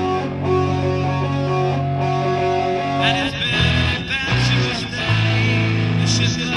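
Lo-fi rock music with guitars and no vocals. Held chords over a sustained bass note give way about three seconds in to a brighter, choppier pattern of short bass notes.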